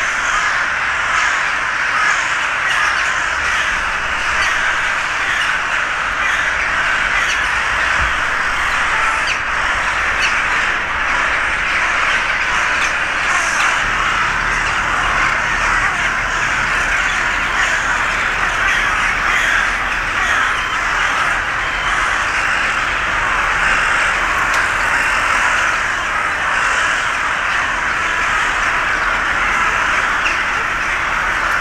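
A large winter roost of hooded crows and rooks cawing all at once: a dense, unbroken chorus of overlapping calls from many birds.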